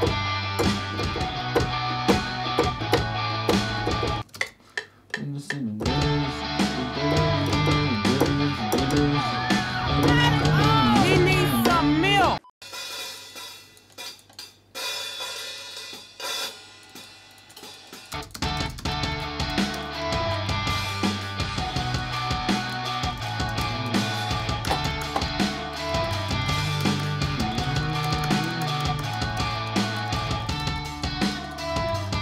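A fast pop-punk beat playing back from a music production program: a rock-guitar-style melody over a programmed live-sounding drum kit with snare and cymbals. The beat drops out briefly about four seconds in, thins to a sparse section from about twelve to eighteen seconds, then comes back in full.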